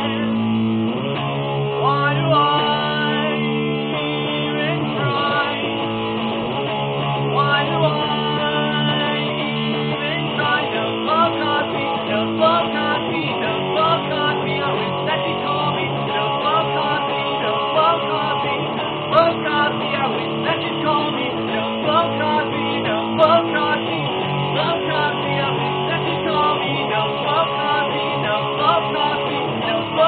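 Les Paul-style electric guitar strummed, its chords changing every second or two at a steady level.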